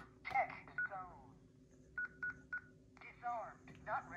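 Honeywell Lyric alarm panel touchscreen keypad beeping on each key press: four short, identical beeps at one pitch, the last three in quick succession, as the code is entered to cancel the alarm.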